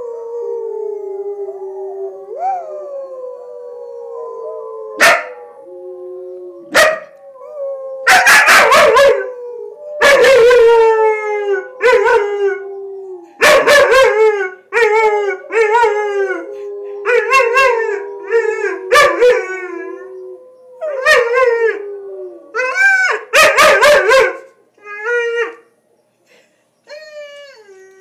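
A German Shepherd puppy barking and yelping in loud, repeated calls, coming thick and fast from about eight seconds in, over long steady howls. The puppy is answering the howling, barking at it at first and then joining in.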